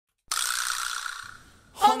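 A short, hissy rattle-like sound effect that starts suddenly and fades out over about a second, followed near the end by a voice beginning to speak.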